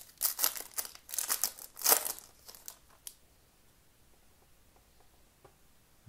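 Plastic wrapper of a baseball card pack being torn open and crinkled by hand: a run of sharp rustles over the first three seconds, loudest about two seconds in.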